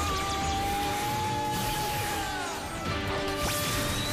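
Soundtrack of a TV superhero morphing sequence: music with sound effects, built around a long held note that slides down about two and a half seconds in, with a sharp hit about a second later.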